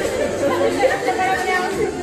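Chatter of several people talking over one another.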